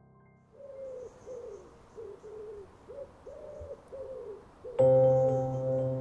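Pigeon cooing, a run of short low coos about two a second. Near the end, soft music with long held notes comes in louder over it.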